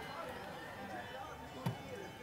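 Low room tone with one light click near the end, a small item handled on the floor.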